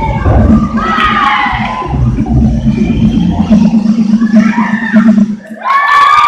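Spectators cheering and shouting high-pitched whoops, swelling into one long loud cheer near the end as the gymnast finishes her floor routine.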